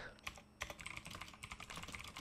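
Typing on a computer keyboard: a quick, faint run of key clicks starting about half a second in.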